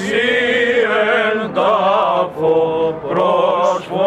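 Several men chanting a Greek Orthodox Byzantine hymn together, with a low note held steady underneath. The melody wavers and ornaments, and the phrases break off briefly about three times.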